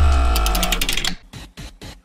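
Electronic transition sting with a deep bass hit and held synth tones over a fast, rattling run of clicks, fading out about a second in.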